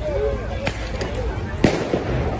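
A few sharp cracks and then one loud bang about one and a half seconds in, over a crowd shouting.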